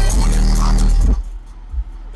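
Hip hop track with rapping, played loud on a car stereo whose two Kenwood 12-inch subwoofers carry heavy bass, heard inside the car's cabin at about half volume. About a second in, the level drops sharply, leaving a quieter low bass rumble.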